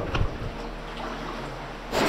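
A short laugh, then a low, steady rush of flowing water in a cave passage.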